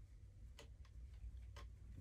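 Faint, scattered clicks and light crinkles from hands handling a plastic action figure and its clear plastic wrapping during unboxing.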